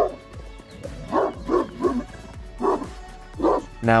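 A large dog, a Fila Brasileiro, barking: three quick barks a little after a second in, then two more spaced out, over background music.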